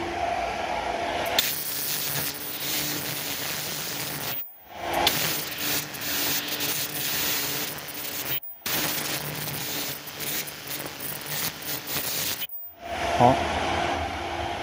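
Automatic KF94 fish-shaped mask machine running, a steady mechanical hum and hiss that grows noisier about a second and a half in and drops out briefly three times.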